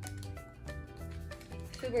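Background music: a soft instrumental track of held notes over a steady low pulse. A woman's voice starts near the end.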